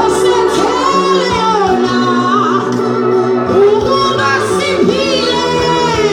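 A woman singing into a handheld microphone, her voice amplified, with long held notes that swell and bend. Steady low backing notes sound underneath and change pitch about a second in and again past the middle.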